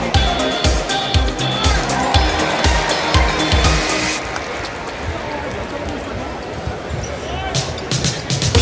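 Arena sound-system music with a steady thumping beat over the noise of a large crowd. About four seconds in the beat and the high ticks drop away, leaving mostly crowd noise, and the beat comes back near the end.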